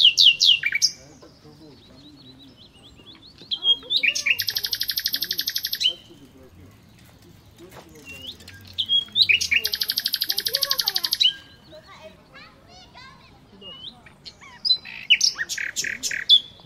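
A songbird singing close by: quick whistled notes, then two loud phrases of a fast, even trill lasting about two seconds each and about five seconds apart, with more whistled notes near the end.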